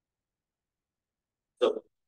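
Dead silence, then a single short vocal syllable from the lecturer's voice near the end, a clipped sound at the start of speech.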